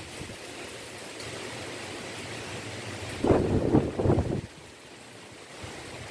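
Wind blowing through leafy trees, a steady rush of noise, with a stronger gust buffeting the microphone for about a second around three seconds in.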